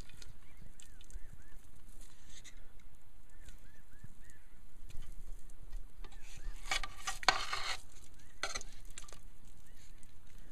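A knife cutting and scraping through solidified grease in a metal pot, loudest in a long scrape about seven seconds in and a shorter one soon after. Birds call in the background in short runs of three or four chirps.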